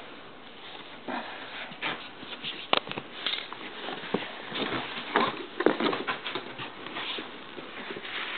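Plastic wrapping and a cardboard box rustling and crinkling in short, irregular bursts as items are unpacked by hand.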